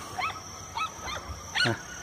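Several short, distant animal calls in quick succession, each a brief rise and fall in pitch, over a faint steady high-pitched hum.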